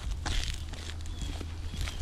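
Shoe footsteps on an asphalt-shingle roof: a few gritty, scuffing steps over a low steady rumble.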